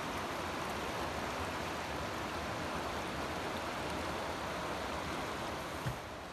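Shallow river running over cobbles and boulders: a steady, even rush of flowing water.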